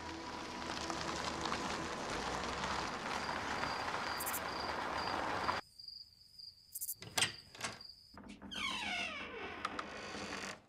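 A loud rushing noise that cuts off suddenly a little past halfway, leaving a cricket chirping in a steady pulse. A few sharp knocks follow, then a scraping sound near the end.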